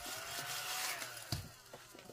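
Scratch-off coating being rubbed off a savings-challenge card, a soft steady rasp for about the first second, then a single light knock about a second and a third in.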